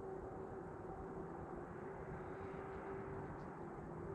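Steady distant highway traffic, an even rumbling hiss with a faint steady hum running through it.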